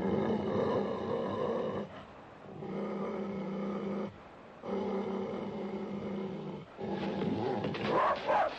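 A rough collie growling in warning: four long, steady growls with short breaks between them.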